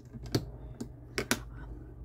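Four light, sharp clicks of hard plastic being handled: long fingernails tapping against a plastic gel polish palette and swatch wheel.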